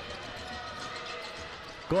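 Basketball being dribbled on a hardwood gym floor over the steady murmur of the crowd in the hall.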